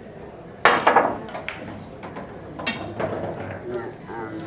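Pool shot with billiard balls clacking: a loud sharp crack about half a second in, then several lighter clacks over the next two seconds as the balls collide.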